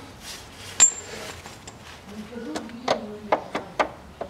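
Metal parts and tools knocking together as a crankshaft pulley bolt and pulley are handled. There is a single sharp metallic clink with a brief ring about a second in, then a quick run of lighter clicks and taps in the second half.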